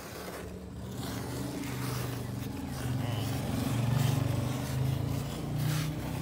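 Low, steady engine hum that swells to its loudest about four seconds in, over a buffalo being hand-milked into a steel bucket, the milk jets squirting into the milk.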